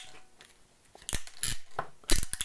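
Pass-through RJ45 crimping tool being squeezed shut on a connector: several sharp clicks and snips about a second in, as it crimps the pins and shears off the wire ends that stick out the front.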